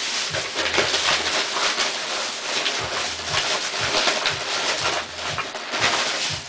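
Steady rustling and crinkling of a shopping bag or its wrapping, with many small crackles, as someone rummages through it to pull out an item.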